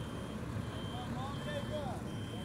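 Coach bus running with a steady low engine rumble, and a repeating high electronic beep about every three-quarters of a second, like a vehicle's reversing or manoeuvring alarm.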